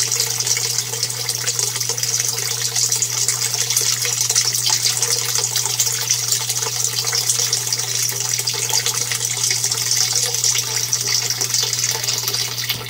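Water from an aquaponics bell siphon's drain pipe pouring in a steady stream into the fish tank, splashing and bubbling at the surface. The siphon has kicked in and is draining the gravel grow bed. A steady low hum runs underneath.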